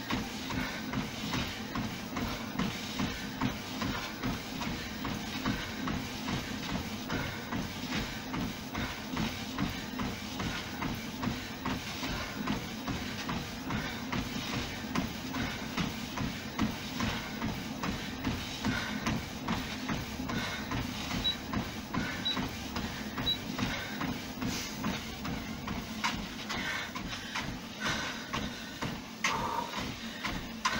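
A Fitnord 200 treadmill running, with feet striking the moving belt in a steady rhythm over the machine's motor hum. Three short, faint beeps come about a second apart, a little past two-thirds of the way through.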